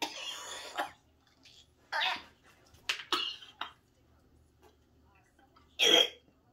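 A woman coughing hard in separate harsh bursts, her reaction to the burn of the wasabi she has just eaten: a long cough at the start, a few shorter ones in the middle, and the loudest near the end.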